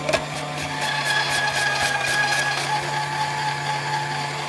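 VEVOR 250 W electric salad maker running with a steady motor hum and whine while its spinning stainless-steel drum blade slices a piece of cucumber pushed down the chute. A knock at the very start, then a rapid run of cutting ticks for about two seconds as the blade chews through the cucumber.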